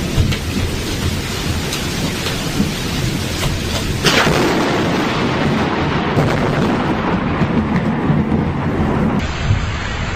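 Thunderstorm: thunder rumbling over steady rain, with a sudden louder crack of thunder about four seconds in that rolls on.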